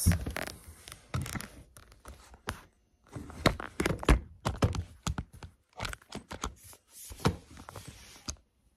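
Handling noise: a string of irregular knocks and thunks with some rustling, from things being moved about close to the microphone.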